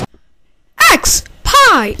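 Music cuts off to a moment of silence, then a high-pitched cartoon voice speaks in two short phrases, each falling steeply in pitch, with a brief hiss between them.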